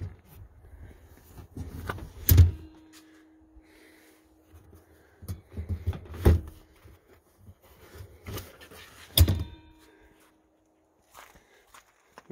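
Rear seat backs of a 1991 Suzuki Sidekick being unlatched and folded down: soft handling rustles and clunks with three sharp knocks, the last the loudest.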